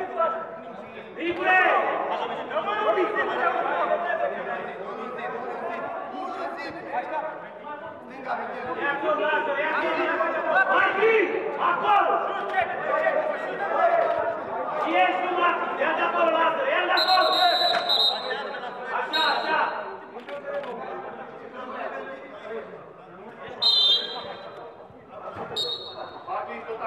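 Players' voices calling and chattering, echoing in a large indoor sports hall. From about two-thirds of the way through come four short, high, steady whistle blasts, the first about a second long, typical of a referee's whistle.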